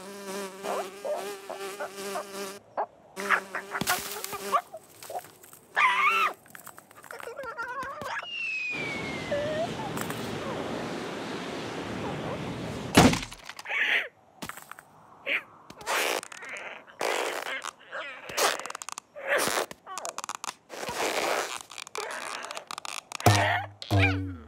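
Cartoon sound effects. A bee buzzes steadily for the first few seconds. Later a long rushing whoosh runs for about four seconds and cuts off with a sharp crack, followed by assorted short effects.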